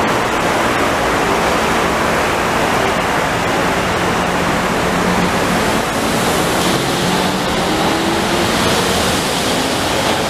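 Steady loud rushing noise of a rubber-tyred Metromover people-mover train running on its elevated guideway, with faint whining tones rising about seven seconds in as the train approaches.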